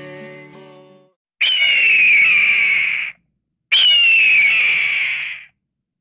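Acoustic guitar music fades out within the first second. Then a bird of prey screams twice, each long, harsh scream sliding down in pitch.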